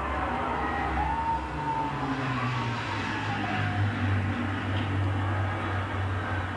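Propeller-driven WWII aircraft, a Lancaster bomber and a Hurricane fighter, droning steadily on their piston engines as they fly over, heard through a television's speaker.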